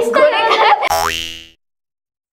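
Laughing speech, then about a second in a comic 'boing' sound effect with a rising pitch that fades out within half a second, cut to dead silence.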